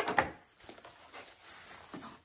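Plastic bubble-wrap packaging rustling and crackling as it is pulled off a boxed eyeshadow palette, with a sharp crackle right at the start and then softer rustling.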